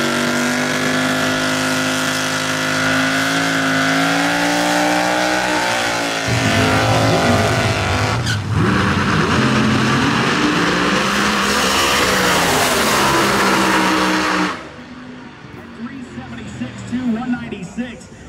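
Pro Mod drag-racing Chevy Camaro doing a burnout: the engine is held at high revs with a steady, slightly rising note while the rear tyres spin, then turns rougher about six seconds in. After a short break comes another loud stretch of race-car engine sound, which cuts off abruptly about two-thirds of the way through to quieter sound with voices.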